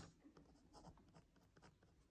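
Very faint scratching of a pen writing a few short strokes on squared paper.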